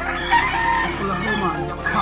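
A game rooster crowing loudly, the crow starting abruptly and rising again near the end.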